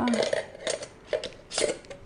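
A metal canning ring being screwed onto the threaded glass neck of a Mason jar: a few short clinks and scrapes of metal on glass, the loudest about one and a half seconds in.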